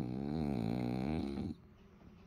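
A French bulldog makes one long, low, rumbling snore-like groan that wavers in pitch for about a second and a half, then stops abruptly.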